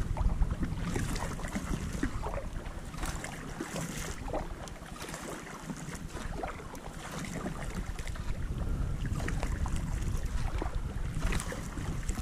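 Kayak paddle strokes in calm water, the blades dipping and splashing every second or two, over a steady low wind rumble on the microphone.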